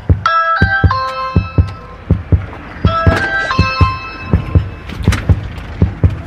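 A doorbell chime plays a short tune of descending ringing notes, and the same tune plays again about three seconds later. A steady low thudding beat runs underneath.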